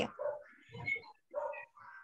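A dog barking four short times, quieter than the voices on the call.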